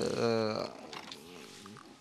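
A man's voice making one drawn-out, growly vocal sound of about half a second, not a word, followed by faint low murmuring.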